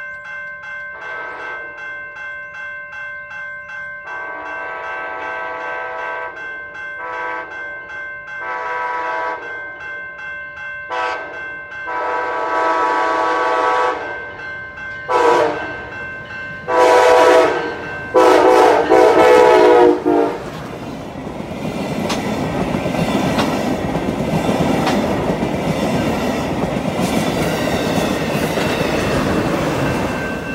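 Railroad crossing bell ringing rapidly while an approaching Amtrak passenger train sounds its horn in a series of blasts, short taps and longer ones, the loudest two near the end of the sequence. The train then passes close by with a steady rumble of wheels on rail, the crossing bell still ringing beneath it.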